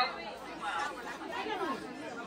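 Background chatter: several people talking at once, softer than the speech around it.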